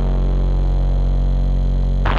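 A rock band's amplified guitar and bass holding one sustained chord as a steady, low drone.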